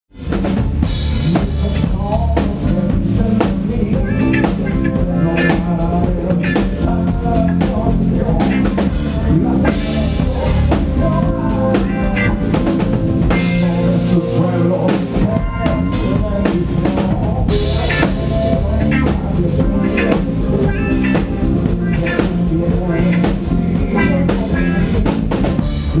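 Live band playing an instrumental intro, led by a steady drum-kit beat of kick, snare and rimshots, with bass and electric guitar. The guitar is a Duesenberg played through a Digitech pedalboard into two Fender Twin Reverb amps. The sound fades in sharply at the very start.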